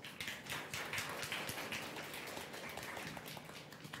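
Congregation applauding, a dense patter of handclaps that slowly dies down.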